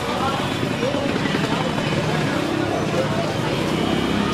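Busy street background: indistinct voices of people talking and steady traffic noise.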